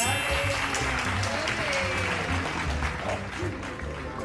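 Crowd applause sound effect, a dense steady clapping, laid over background music with a steady low beat.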